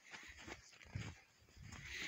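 Footsteps in snow: a few soft, faint steps, each with a low thud.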